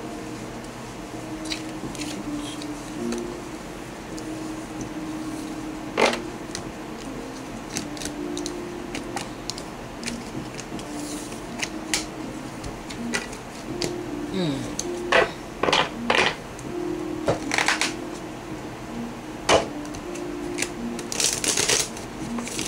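Tarot cards being gathered and shuffled by hand, with sharp card snaps about six seconds in and a cluster of them through the second half, busiest near the end, over background music with a steady line of short low notes.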